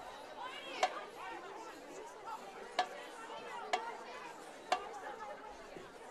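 A drum's sharp rim clicks keep a slow, even marching beat of about one click a second, with a click or two skipped, over the chatter of the crowd in the stands.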